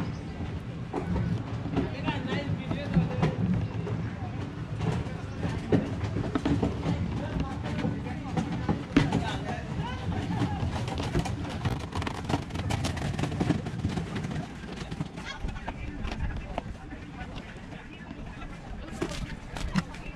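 Wind rumbling on the microphone, with light clicks and scrapes of a knife against a plastic plate as small whole fish are scored. Voices in the background.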